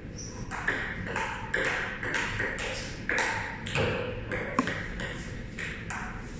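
A table tennis rally: a ping-pong ball knocking back and forth, alternately bouncing on a Sponeta table and being struck by rubber paddles, a quick sharp click about every third to half second, with a little room ring after each hit. The rally runs from about half a second in until near the end.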